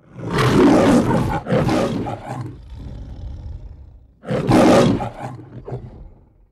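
The MGM logo's lion roar: a lion roaring three times, two roars close together at the start and a third about four seconds in.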